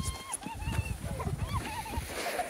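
A woman's high-pitched squeal while sliding down an ice slide: a long held cry that breaks off just after the start, then a run of short, wavering yelps, over a low rumble.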